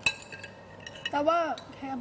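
A single sharp clink of a utensil against a dish right at the start, followed from about a second in by a woman speaking in Thai.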